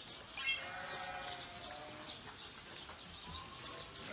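Sheep bleating faintly: one drawn-out bleat starting about half a second in and lasting about a second, then a fainter short call near the end.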